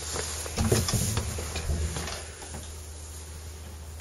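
A wooden cabin door being opened by its handle, with a few light clicks and knocks, over a low steady hum.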